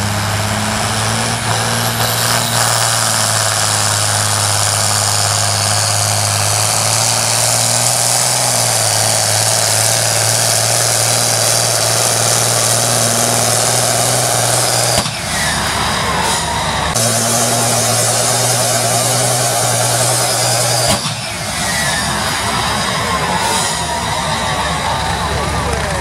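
Modified John Deere pulling tractor's diesel engine running hard under full load as it drags a weight-transfer sled: a loud, steady drone. The sound changes abruptly about 15 and 21 seconds in.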